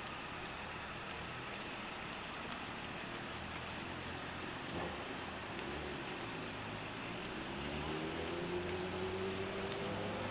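Steady city street traffic noise, a continuous hiss of passing cars and tyres. Over the last few seconds a vehicle's engine note rises slowly in pitch as it accelerates.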